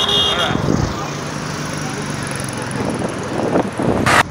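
Street ambience: a steady wash of road traffic as cars and motorcycles move along the road, with indistinct voices underneath.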